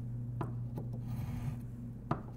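Fine sandpaper on a homemade wooden sanding block rubbing across the ends of a guitar neck's frets, crowning and rounding them off. The strokes are soft and scratchy, with a few light ticks.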